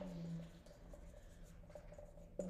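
Marker pen writing on a whiteboard: faint scratching strokes as a word is written.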